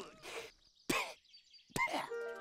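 A cartoon character laughing in two short bursts, about a second apart, with near silence between.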